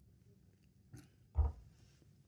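Quiet room tone in a pause before speech, with a faint mouth click about a second in and then a brief low throat sound from a man, like a short grunt, just after halfway.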